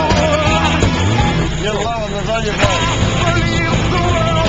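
A song playing: a band with a melody line, a continuation of the lyric-sung track heard just before.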